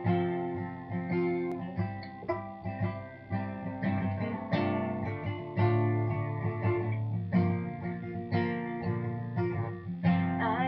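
Acoustic guitar playing the instrumental intro of a song, picked and strummed chords in a steady rhythm.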